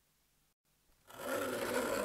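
Near silence for about a second, then a small mechanical toy starts a steady whirring that grows louder.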